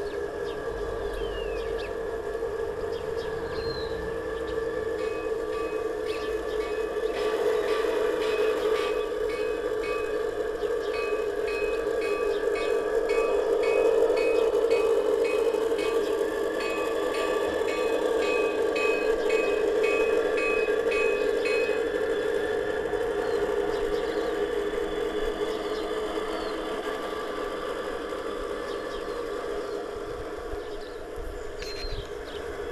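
G-scale model diesel locomotive and its train running along garden-railway track, a steady hum that grows louder as it comes closest near the middle and then fades as it moves away. A light regular clicking, about two a second, runs through the middle part of the pass.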